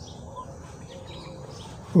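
Faint bird chirps over low, steady outdoor background noise.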